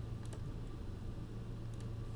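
A few faint computer keyboard clicks over a low, steady hum.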